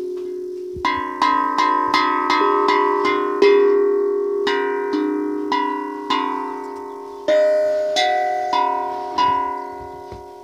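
A Hang, a steel hand-pan drum, struck by a young child's hands: a string of single ringing notes, about two or three a second, each sustaining and overlapping the next as the pitch moves between tone fields. The strikes pause briefly about three and a half seconds in, then resume.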